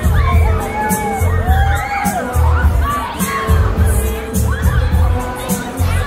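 Riders on a swinging fairground thrill ride screaming and shrieking as it swings them, over loud ride music with a heavy, pulsing bass beat.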